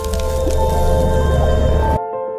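Logo-reveal sound effect: a deep rumble and a hissing whoosh laid over light background music of single sustained high notes. The rumble and whoosh cut off suddenly at the end.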